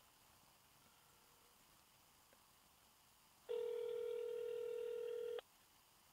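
Outgoing phone call's ringback tone played through a smartphone's speaker: one steady ring lasting about two seconds, starting just past halfway through after near silence. It means the call is ringing at the other end and has not yet been answered.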